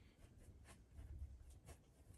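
Faint scratching of an oil-paint brush on canvas: a few short strokes laying on thick white paint.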